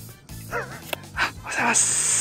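Edited-in sound effects over background music: short yelping, dog-like cries that slide down in pitch, then a loud bright swish near the end.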